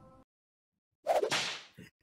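The last notes of the intro music stop, then after a moment of silence a whip-crack sound effect comes in about a second in, its noisy tail fading out in under a second.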